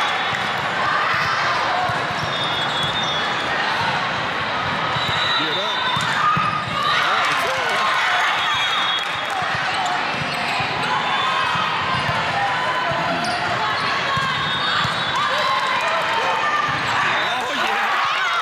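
Indoor volleyball play in a large gym: many voices of players and spectators calling and chattering, with thuds of ball contacts and brief high squeaks of athletic shoes on the court floor, recurring several times.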